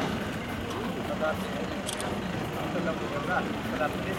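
A parked van's engine idling steadily, with scattered murmured talk from people gathered close by.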